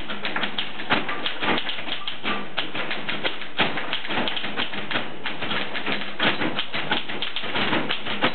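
Typewriters played together as percussion, a dense, continuous clatter of key strikes.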